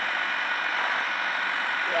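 Delivery truck's engine running steadily, a constant even hum with no change in pitch.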